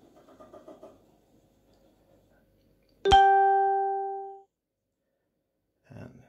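A single bright plucked or chimed musical note, struck about three seconds in and ringing down for about a second and a half before cutting off abruptly into silence.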